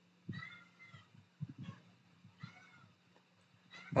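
Domestic cat meowing twice, faintly, each meow a short rising-then-falling call about two seconds apart.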